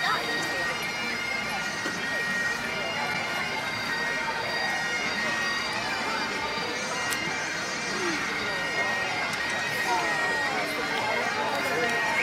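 Highland bagpipes playing steady held notes over a constant drone, with the chatter of a crowd of voices underneath.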